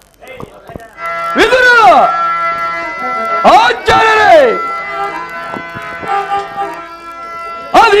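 Stage music holding a steady instrumental chord, over which a male voice sings or declaims two long swooping notes, each rising sharply then falling away. The first comes about a second and a half in, the second about four seconds in. A voice starts again near the end.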